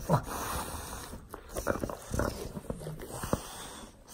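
An English bulldog making short, irregular breathing and mouth noises as it tugs and chews on a ball toy.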